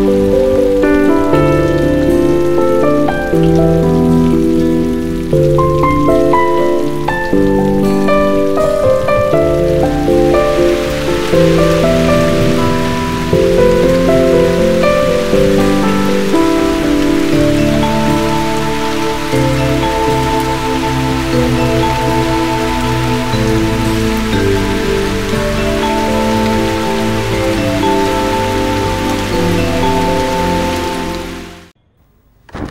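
A melodic film score of held and changing notes, with the steady hiss of heavy rain joining it about ten seconds in and carrying on under longer, sustained notes.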